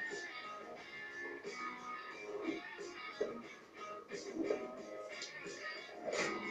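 Music with voices over it, playing from a television's speaker and picked up across the room.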